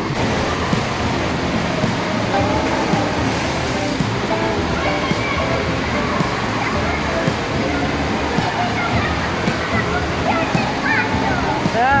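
Busy indoor pool-hall ambience: many voices echoing over splashing and rushing water, with a voice rising sharply in pitch near the end.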